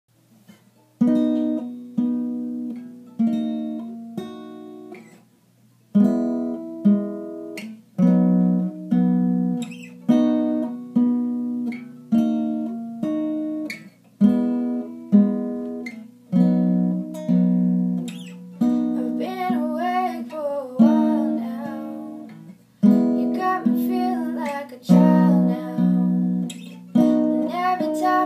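Steel-string acoustic guitar with a sunburst body, played slowly: a chord about every second, each left to ring out. It starts about a second in, with one short pause early on.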